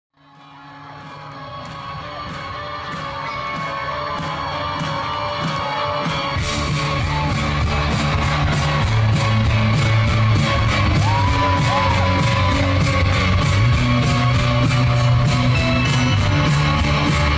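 Live rock band heard from the audience in an open-air venue, the sound fading up from silence at the start. A steady beat comes first, and about six seconds in the full band enters with heavy bass and guitars.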